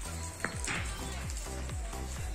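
Background music with a steady beat and a low bass line.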